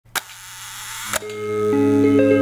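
Camera shutter sound effect: two sharp clicks about a second apart with a rising hiss between them, then held music notes come in and build.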